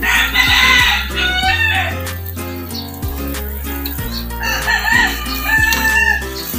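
A rooster crows loudly, once at the start and again near the end, over background music with a steady bass line.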